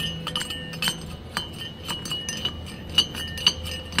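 Light metallic clinks and ticks, several a second at uneven spacing, from metal parts being handled: the shift fork of a Chevrolet S-10 front-axle 4x4 engagement housing being worked back and forth by hand.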